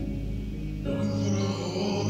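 Live small-band music, with sustained low notes underneath and a brighter, richer note coming in about a second in.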